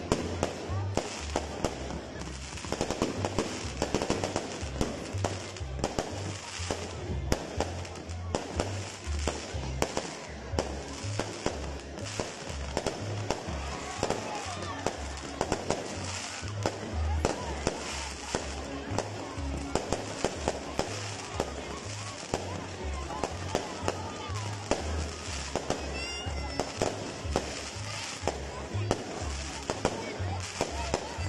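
Fireworks going off in rapid succession: continuous crackling and popping with many sharp reports.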